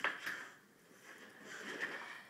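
Dogs scrabbling and nosing at the gap under a wooden cabinet on a hardwood floor: a sharp click right at the start, then soft scuffling.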